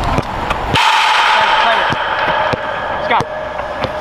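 A football being struck and passed during a drill: several sharp kicks, with players' voices. A loud, sustained noise starts about a second in and lasts about two seconds.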